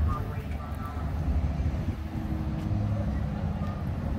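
A vehicle engine running with a steady low rumble, with faint voices in the background.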